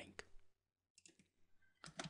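Near silence with a few faint computer keyboard and mouse clicks, a couple in the first half-second and one just before the end.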